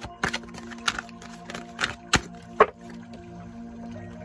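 A deck of tarot cards being shuffled and handled: about half a dozen short sharp card slaps and taps, the loudest about two and a half seconds in. Soft background music with long held tones plays throughout.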